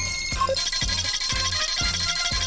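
Film soundtrack with a steady low beat about twice a second under high, bell-like electronic beeping from a scouter's power-level readout.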